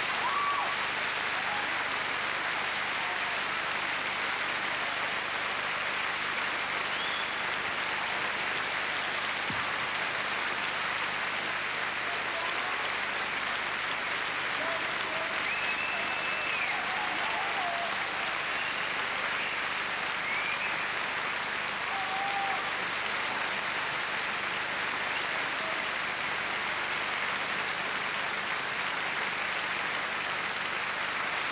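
Sustained audience applause from a large concert crowd, steady throughout, with a few brief high-pitched calls over it around the middle.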